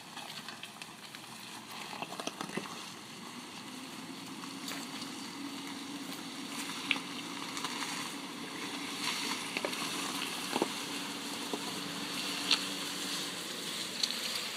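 Nissan X-Trail crawling through mud and over loose stones as it approaches and passes close by: a low, steady engine drone under crackling and scattered snaps from the tyres on wet gravel and mud, growing louder.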